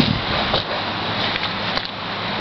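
Steady background rumble and hiss with a low, even hum underneath.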